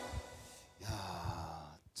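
The song's backing music ends, its last chord dying away within the first half second or so. Then a man's soft, breathy vocal sound lasts about a second before talk begins.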